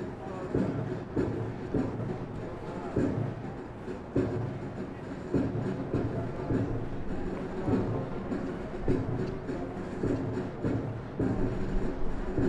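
A flight of airmen marching in step on a concrete parade ground: boots landing together in a steady beat, a little under twice a second.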